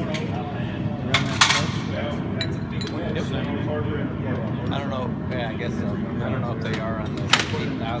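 Sharp metallic clinks of tools and parts against the Gravely rider's transmission as it is taken apart: two about a second in and one near the end, over low voices.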